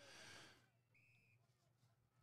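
Near silence, with one faint, short, steady high tone about a second in.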